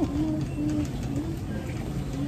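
A low, wordless voice in a few short, fairly level notes, like humming, over a steady low hum.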